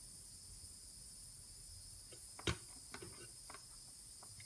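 Faint steady high-pitched chirring drone, with one sharp click about two and a half seconds in and a few lighter ticks around it.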